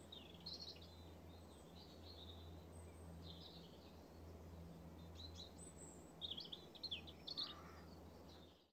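Faint birdsong: scattered short chirps and trills, busiest and loudest near the end, over a low steady hum.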